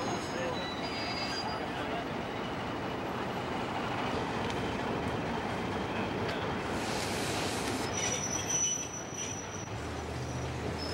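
Passenger train, pulled by an Alco RS11 diesel locomotive, crossing a steel deck-truss bridge: a steady noise of the train rolling on the rails.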